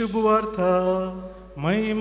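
A priest chanting the Gospel announcement of the Mass in Konkani, solo, on long held notes at a near-steady pitch. Near the end there is a short break, then a quick rise in pitch into the next note.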